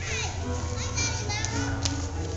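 Young children chattering and calling out in high voices over music with a steady low bass, with two short sharp clicks in the second half.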